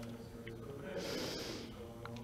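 A soft breath drawn close to a handheld microphone, about a second in, over a faint steady hum of room tone.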